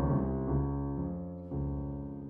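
Solo grand piano playing a slow classical passage: low sustained chords and notes left to ring and fade, with a new chord struck about a second and a half in.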